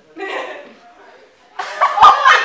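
Casual off-mic voices of a few people: a brief vocal burst, cough-like, just after the start, then loud talking starting about one and a half seconds in.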